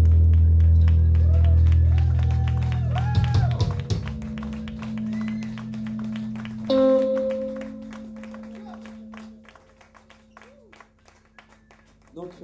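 Live rock band ending a song: loud sustained bass and guitar notes ring on, then break up and fade over about four seconds. A single guitar note struck about seven seconds in rings and dies away, leaving only faint scattered clicks.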